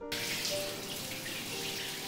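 Shower running, water spraying steadily from the shower head.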